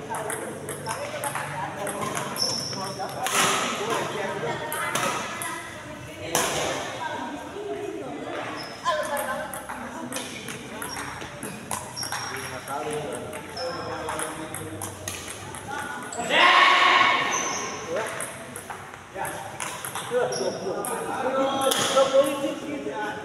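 Indoor badminton doubles rally: rackets strike the shuttlecock in sharp cracks at irregular intervals, with shoes squeaking briefly on the court and voices echoing in the hall. The loudest moment is a noisy burst about a second long, roughly three-quarters of the way through.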